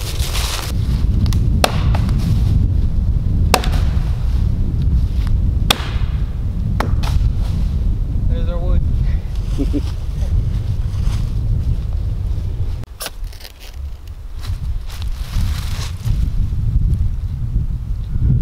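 Wind rumbling on the microphone, with several sharp snaps of dry sticks being broken for firewood, spread a second or two apart.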